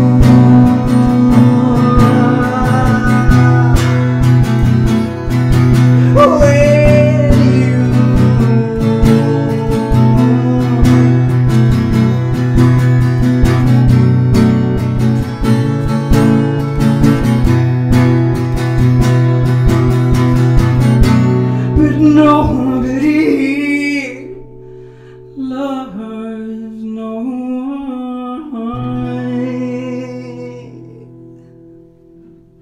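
Acoustic guitar strummed in a steady rhythm with a man singing over it. About 24 seconds in the strumming stops, and the music turns quiet and sparse, with held notes and soft singing.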